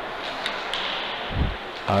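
Ice hockey rink ambience during live play: a steady hiss of skates and arena noise, with a sharp click and a short scraping hiss in the first second and a low thump a little later.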